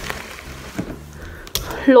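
A single sharp knock about one and a half seconds in, a hard object set down on a granite countertop. A woman starts speaking just after it.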